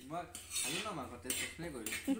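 Metal cookware and cutlery clinking and scraping, with faint voices talking under it.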